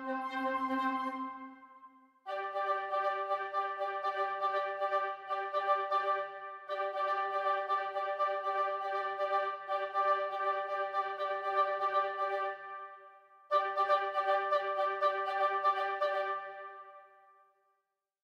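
Sampled woodwind sections of Kirk Hunter Studios' Kinetic Woodwinds playing a chord in fast repeated staccato notes, a rhythmic ostinato. The pattern breaks off about two seconds in, restarts, stops again around twelve seconds, comes back a second later and dies away in reverb near the end.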